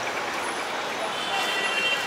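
Steady background noise of a busy street with traffic. A faint higher tone joins about halfway through.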